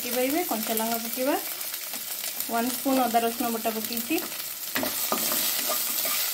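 Green chillies, curry leaves, onion and peanuts frying in hot oil in a kadai: a steady sizzle, with a spatula stirring through the pan. A wavering pitched whine comes and goes twice over the sizzle in the first four seconds.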